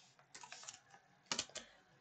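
Faint computer keyboard keystrokes: a scattered run of light taps about half a second in, then a couple of louder clicks near the end.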